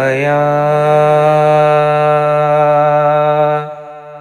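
A male voice singing a naat, holding one long steady note on the final 'aaya' of a line. Near the end the note drops away sharply, leaving a quieter tone lingering.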